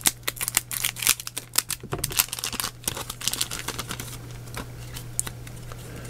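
Foil booster-pack wrapper crinkling and tearing open by hand: a dense run of crackles over the first three seconds, thinning to scattered clicks and rustles as the cards are pulled out and handled.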